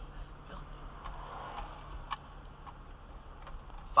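Steady low hum of a car's engine and road noise heard from inside the cabin, with a few faint, irregular clicks.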